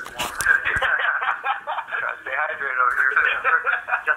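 Men's voices talking over a smartphone's speaker on a live phone call, thin and tinny with the lows and highs cut off.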